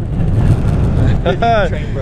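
Small wheels of a ride-on scooter suitcase rolling on the road with a low rumble, and a short shouted exclamation about one and a half seconds in.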